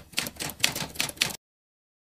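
Typewriter keystroke sound effect: a quick run of clacks, about five a second, cutting off abruptly about a second and a half in.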